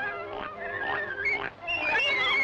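Cartoon piglets squealing as they are pulled off a nursing sow: a string of high, wavering squeals that bend up and down, with a brief break about three-quarters of the way through.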